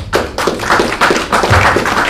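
Audience applauding: many claps building quickly into a dense, loud round.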